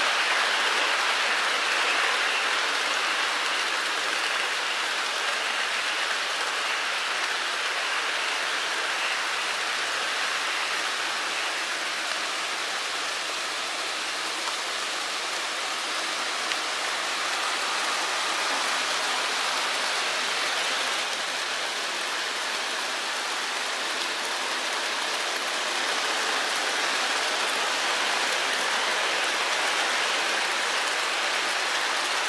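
Several HO scale model trains running at once on a layout: a steady rushing clatter of small metal wheels on track and the trains' motors, with no single sound standing out.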